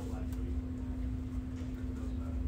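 Steady indoor hum: a low rumble with one constant droning tone running through it, and faint voices in the background.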